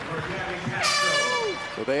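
A horn sounds once, one steady high tone held for about a second, over background voices.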